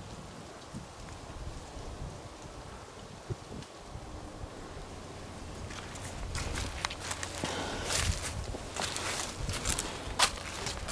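Footsteps crunching through dry fallen leaves, starting about six seconds in and coming as an irregular run of steps; before that only a faint outdoor background.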